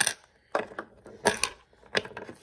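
Small hard plastic toy pieces clicking and tapping on a wooden tabletop as a miniature grocery package and toy figurines are handled, about four sharp clicks across two seconds.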